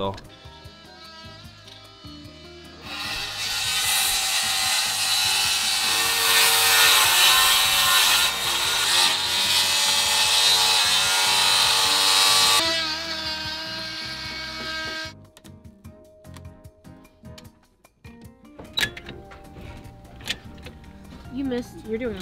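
DeWalt circular saw cutting out a section of composite deck board. It starts about three seconds in, runs loud and steady for about ten seconds, then winds down.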